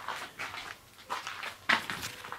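A few short rustles as pepper plant leaves brush against the camera while it is pushed into the foliage, the loudest near the end.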